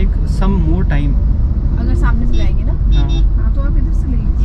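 Steady low road and engine rumble inside a moving car's cabin, with brief snatches of voice over it.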